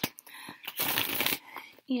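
A deck of tarot cards being shuffled by hand, with a short burst of shuffling about a second in.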